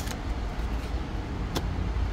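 Steady low outdoor rumble, with one sharp click about one and a half seconds in as a card is drawn from a deck of oracle cards.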